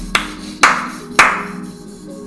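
Three sharp hand claps about half a second apart, over steady background music.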